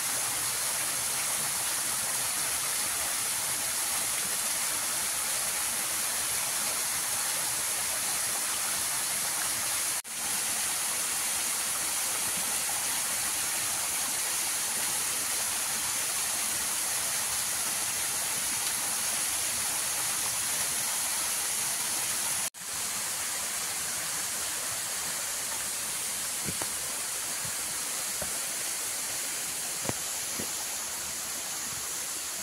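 Small waterfall pouring down a rock face into a shallow pool: a steady rushing splash with strong hiss. It cuts out for an instant twice, about ten seconds in and again a little past twenty-two seconds.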